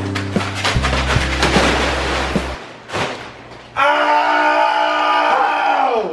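Background music over the crinkling and splashing of a body sliding across a wet plastic tarp. About four seconds in, a long held yell comes in.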